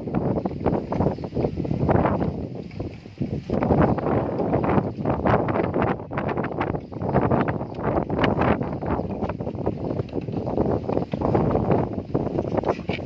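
Wind buffeting the microphone, with irregular rustling as a puppy noses and digs through cloth, plastic and cardboard on the ground.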